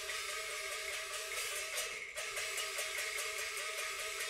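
Cantonese opera instrumental accompaniment, led by a plucked string instrument playing a quick run of repeated notes, about five a second.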